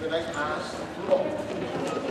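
Voices talking in a gym hall, with light knocks on the hardwood court floor as players move about.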